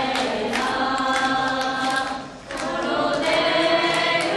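A group of Vaishnava devotees chanting together in unison, with a steady beat of short, sharp strikes keeping time. The chant drops away briefly about two seconds in, then carries on.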